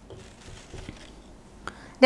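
Faint marker strokes on a whiteboard, with a small click near the end.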